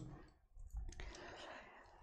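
A couple of faint clicks, followed by a soft short hiss, in an otherwise quiet room.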